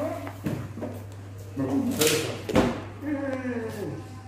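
People's voices speaking indistinctly in a room, over a steady low hum, with a short hiss about halfway through.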